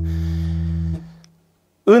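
A low note on a Yamaha BB735A five-string electric bass, played through an Ampeg Portaflex bass amp, sustaining steadily and then stopping about a second in.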